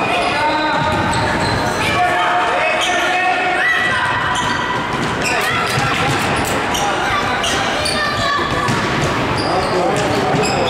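Indoor futsal game: the ball being kicked and bouncing, and players' shoes on the wooden hall floor, with voices calling, all echoing in a large sports hall.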